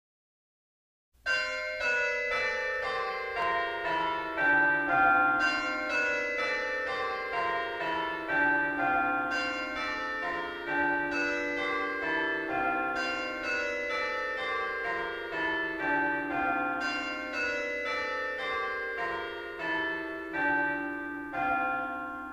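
Church bells ringing a continuous peal, starting about a second in: quick overlapping strikes that fall in pitch in repeated runs, each note ringing on under the next.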